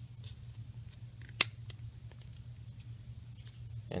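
A sharp plastic click about one and a half seconds in, with a few fainter ticks, from hands working the shield piece of a 1/6-scale toy Panzerschreck rocket launcher, over a steady low hum.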